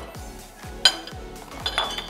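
Cutlery clinking against ceramic plates and bowls: one sharp, ringing clink about a second in and a few lighter ones near the end. Background music with a steady beat runs underneath.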